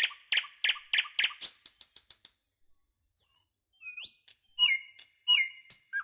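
High, bird-like chirps repeated about four times a second, fading away over the first two seconds, then a few short whistles, the two loudest sliding down onto a held note near the end.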